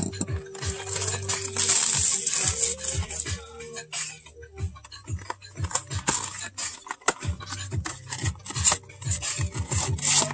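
Plastic shrink wrap crinkling and rustling as it is peeled off a cardboard booster box, with the box then handled and its lid flipped open, full of short scratchy clicks.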